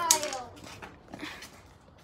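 A child's short vocal exclamation that slides down in pitch over about half a second, then fades to faint background.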